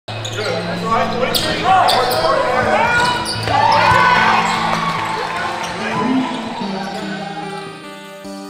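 Basketball game sound in a gym, with voices and sharp knocks of the ball, under music with held bass notes.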